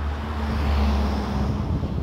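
A car driving past on the street, its tyre and engine noise swelling to a peak about a second in and then easing off, over a steady low rumble of wind on the microphone.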